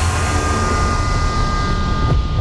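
Fighter jet's engine roar as it flies past, a deep rumble under a hiss that fades away, with a steady high whine.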